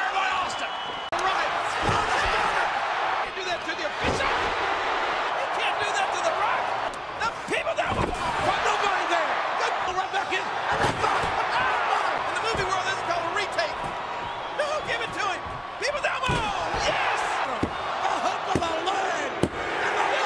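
Plastic wrestling action figures slammed down onto a toy wrestling ring's mat, giving several separate thuds, with a boy's voice going on in between.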